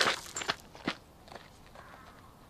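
Footsteps: a few steps about half a second apart, growing fainter.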